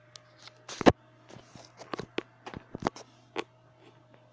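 An irregular run of sharp clicks and knocks, loudest about a second in, over a steady low hum.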